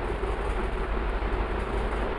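Steady background noise with a constant low hum, no distinct events.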